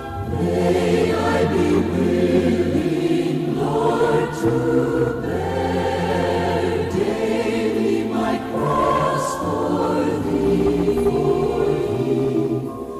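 A choir singing a slow hymn in harmony over held low bass notes, starting just after the beginning.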